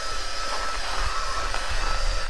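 SparkFun Heaterizer XL-3000 heat gun running, a steady blowing hiss with a thin constant whine, as it blows hot air onto an iced-over car window, with a low rumble underneath.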